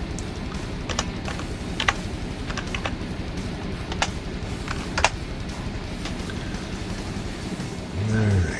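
Computer keyboard keys clicking as a search term is typed, in a few short clusters over the first five seconds, over a steady low background hum.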